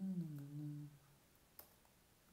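A man's wordless hesitation sound, a steady-pitched hum held for about a second, then a single keyboard click about a second and a half in.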